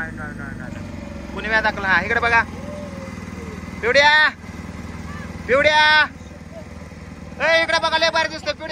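Boat engine running steadily with a low hum, under several loud, drawn-out voice calls.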